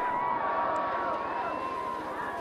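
Crowd of spectators at a biathlon range, many voices talking and calling out at once, with one long held note over the voices.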